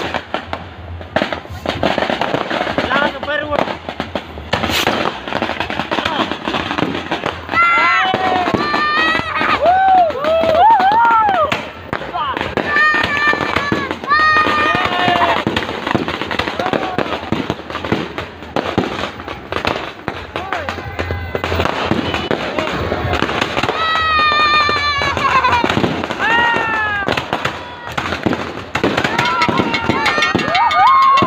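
An aerial fireworks display: shells bursting overhead with repeated bangs and crackle. Voices call out over the bangs through the middle of the display.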